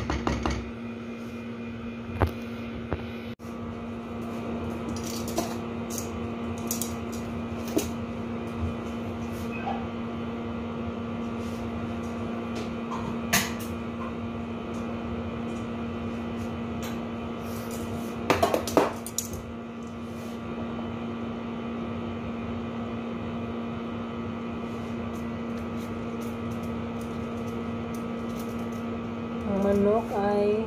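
A steady electrical appliance hum with several fixed tones fills a small kitchen, broken by occasional short clicks and knocks of kitchen items being handled, with a brief cluster of them about two-thirds of the way through.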